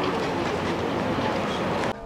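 Steady outdoor city-street background noise, an even rumble and hiss with no clear single event, cutting off abruptly just before the end.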